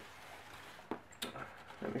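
Quiet handling sounds in a plastic tub: soft rustling with a couple of light clicks about a second in, as a paper towel and a bamboo pole are moved.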